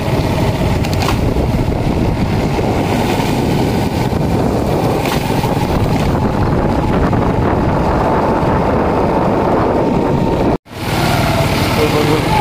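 Small Honda motorcycle engine running steadily while riding on a wet road, under a steady rush of wind and road noise. The sound cuts out abruptly for a moment near the end.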